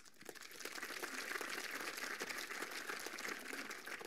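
Audience applauding: a dense spatter of clapping that builds over the first second, holds steady, then thins out near the end.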